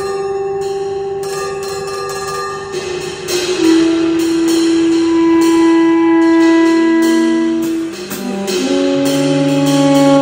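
Free-improvised music by tenor saxophone, guitar and drums: long held tones, with two or three pitches often sounding together and changing every few seconds, over scattered light percussion strokes.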